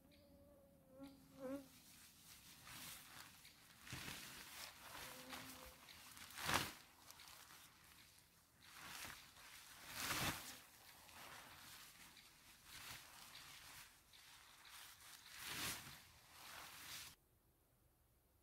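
Synthetic tarp rustling and swishing as it is pulled down and bundled up by hand, in a run of irregular swishes with two louder flaps about six and ten seconds in; the rustling stops abruptly shortly before the end.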